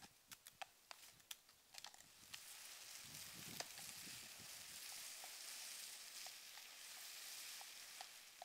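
Woven plastic builder's bag being dragged along a tarmac lane behind a walking horse, faint: sharp crackles and clicks at first, then a steady scraping hiss from about three seconds in, with light regular hoof ticks.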